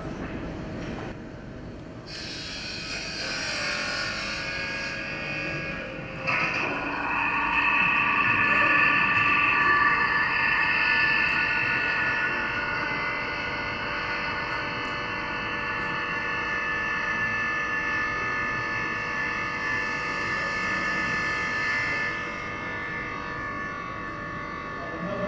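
Small electric pumps of a low-water flushing toilet running with a steady whine of several held tones, over a hiss of spraying water. The hiss starts about two seconds in and stops near the end, and the whine grows louder about six seconds in.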